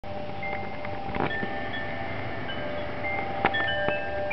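Wind chimes ringing, with several clear metal tones struck at irregular moments and left to ring on.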